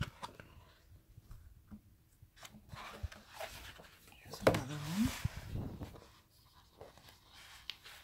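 Sheets of decorative paper being handled and turned over, with soft rustles and light taps. About halfway through, a person's voice makes a short wordless sound whose pitch rises and falls.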